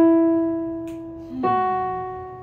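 Two single notes played on a digital keyboard: one struck at the start, then a slightly higher one about a second and a half in, each ringing and fading away.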